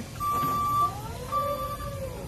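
Raymond stand-up electric forklift sounding its warning beeper in long, evenly spaced beeps, about one a second, while the drive motor's whine rises and then falls in pitch as the truck speeds up and slows.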